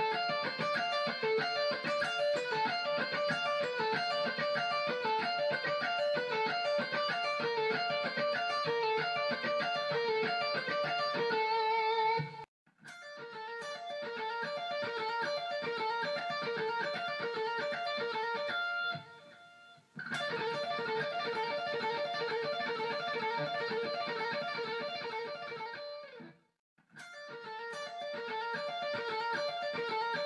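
Electric guitar, a Stratocaster-style solid-body, playing fast repeating D minor legato licks: rapid runs of notes slurred with hammer-ons and pull-offs. The playing stops briefly about 12, 19 and 26 seconds in, then starts again.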